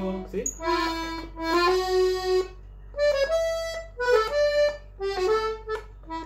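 Hohner piano accordion played slowly on its right-hand keyboard: a melody of held notes one after another, with short breaks between phrases.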